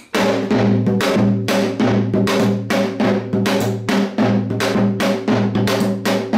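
Pungmul janggu (Korean hourglass drum) played in a fast, even run of about three to four strokes a second, mixing the deep gungpyeon head struck with the mallet and the sharp chaepyeon clack of the thin bamboo stick. The low head's ringing tone carries on under the strokes. The run starts abruptly and keeps going.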